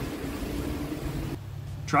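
Boat's engines running steadily with wind and water noise aboard a cruising motor yacht. About 1.4 s in, the sound cuts to a quieter steady hum, and a voice begins right at the end.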